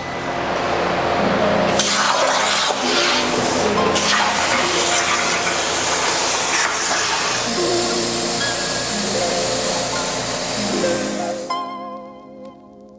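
The torch of a Langmuir Systems CNC plasma table cutting steel plate: a loud, steady hiss that stops shortly before the end. Background music plays underneath.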